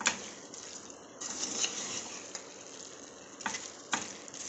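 Chicken pieces and masala sizzling in an aluminium pot while a spoon stirs them. A sharp click comes right at the start, and the hiss grows stronger from about a second in.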